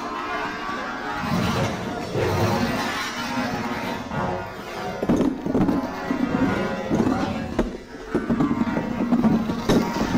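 Bass clarinet and drum kit in free improvisation: reedy held and wavering clarinet notes over scattered drum and cymbal hits.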